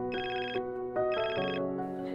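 A telephone ringing: two short rings, about half a second each and a second apart, over background music.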